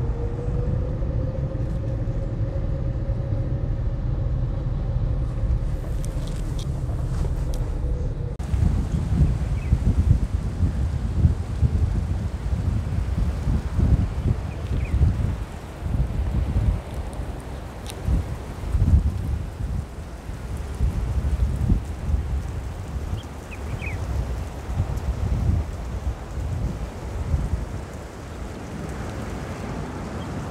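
Car driving slowly, a steady low road and engine rumble inside the cabin; about eight seconds in it gives way abruptly to gusty wind buffeting the microphone outdoors, rising and falling in gusts.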